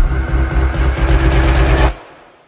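Cinematic trailer-style outro music: a deep rumbling drone with a high tone rising slowly over it, cutting off abruptly near the end.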